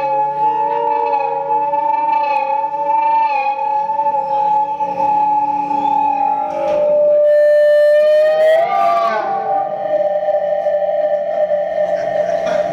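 Live electric violin and effects-laden electric guitar holding long, wavering sustained notes in the slow final bars of a jam-band song. About seven seconds in a new high tone enters, and a sliding pitch sweep follows a second or two later.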